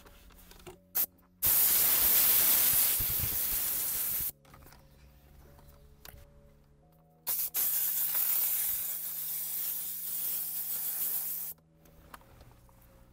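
Handheld steam cleaner's nozzle hissing in two long blasts of about three and four seconds, each started by a short spurt.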